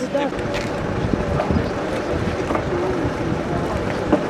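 Wind buffeting the microphone in an irregular low rumble, with faint voices of people talking in the background.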